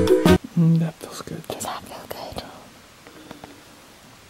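Background music that stops about half a second in, followed by soft whispering voices.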